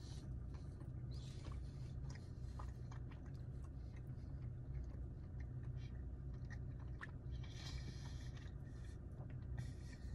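A man chewing a mouthful of pizza with his mouth closed: faint, soft mouth clicks and smacks, over a steady low hum.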